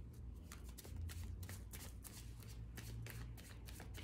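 A deck of tarot cards being shuffled by hand: a faint, continuous run of soft, irregular card clicks, several a second.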